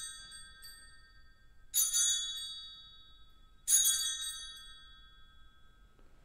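Altar bell rung at the elevation of the host during the consecration. It is struck twice, about two seconds apart, and each ring fades slowly. The last of an earlier ring is still dying away at the start.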